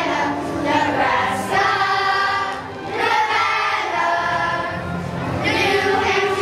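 Children's choir singing in unison, holding sustained notes, with a brief break between phrases a little under halfway through.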